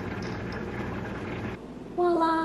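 Steady rushing noise that cuts off suddenly about a second and a half in.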